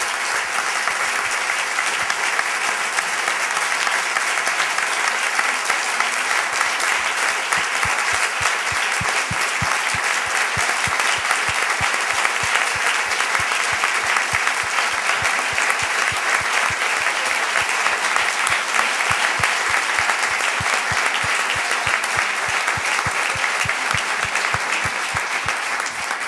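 Long, steady applause from a hall full of people, with individual claps standing out.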